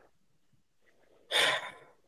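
Near silence, then, a little past a second in, a short breathy exhale like a sigh from a person.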